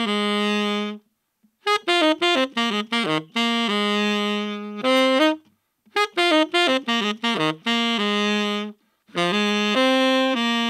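Solo tenor saxophone playing phrases of quick runs that settle on long held notes, broken by short silent gaps. It is heard through a Kimafun clip-on wireless microphone that has been EQ'd to match a Beyerdynamic M160 ribbon mic.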